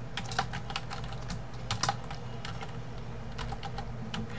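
Computer keyboard typing: a run of irregular keystrokes as code is entered.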